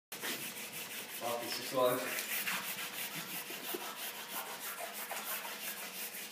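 Repeated rubbing of a drawing tool on paper, a scratchy stroke about four times a second, as when laying down or rubbing away charcoal or graphite. A short voice sound comes in near two seconds in.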